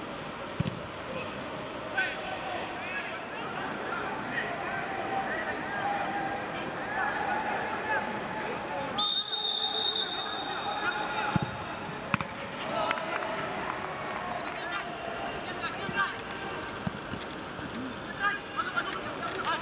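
Players' shouts and calls on the pitch of an empty football stadium, with the odd thud of the ball being kicked, and a long blast of a referee's whistle about halfway through.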